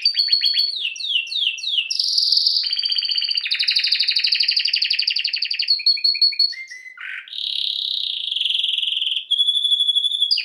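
Domestic canary singing a long, unbroken song of rapid trills, with a run of quick downward-sweeping notes about a second in, a short dip near seven seconds, and a held clear whistle near the end.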